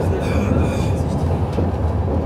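Moving train heard from inside the carriage: a steady low rumble.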